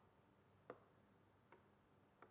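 Two faint clicks, a little under a second apart, over near silence: a pointing device clicking through an on-screen menu.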